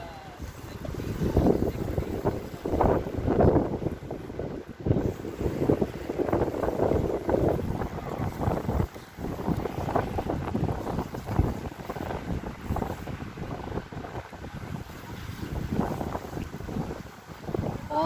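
Wind gusting on the microphone over the sound of a boat on open water, in uneven rushing surges.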